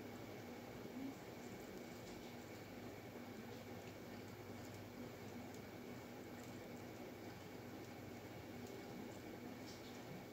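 Quiet room tone: a faint steady hiss with a low hum and a thin steady whine, and a few soft clicks.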